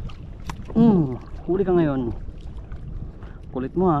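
A man's excited exclamations: three short, loud vocal calls with pitch sliding up and down, the last a 'wah', over a steady low rumble of wind and water.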